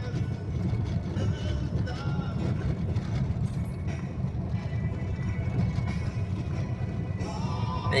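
Steady low rumble of a car driving over a rough graded dirt road, heard from inside the cabin.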